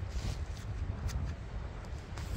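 Low wind rumble on the microphone, with faint rustles and light ticks as gloved hands handle the two split halves of an ammonite nodule.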